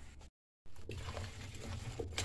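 A moment of dead silence from an edit, then faint scraping and sloshing of a spoon stirring chopped apples in cream inside an aluminium pot, over a low steady hum.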